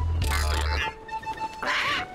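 Cartoon parrot squawking twice over a bouncy music intro: one squawk about half a second in and another near the end.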